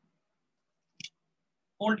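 A single brief click about a second in, against near silence.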